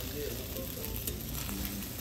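An okonomiyaki and a fried egg sizzling steadily on a hot teppan griddle.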